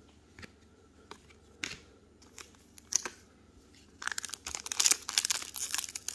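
Foil wrapper of a trading-card pack handled with a few light crinkles, then torn open from about four seconds in, with quick, dense crinkling and tearing.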